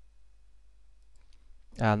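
A few faint clicks over a low steady hum, then a man starts speaking near the end.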